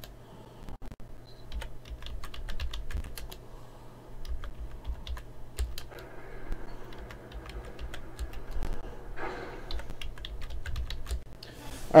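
Computer keyboard being typed on: key clicks in short, irregular runs with brief pauses between words.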